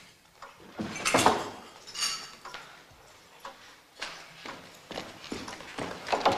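Scattered clinks and knocks of china cups and saucers being gathered onto a tray, one clink ringing briefly about two seconds in, with evenly spaced footsteps on a hard floor in the second half.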